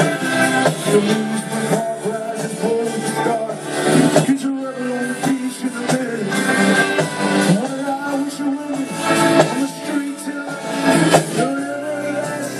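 A live rock band plays through a big outdoor PA, with a male lead vocal singing over the band, heard from within the crowd.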